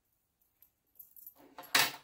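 Small sewing scissors snipping off the tied thread ends at a pincushion's button: light metallic clicks of the blades, then one louder, sharp snip near the end.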